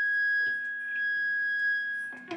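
An electric guitar through its amplifier sustaining one steady, high tone, with a couple of faint ticks.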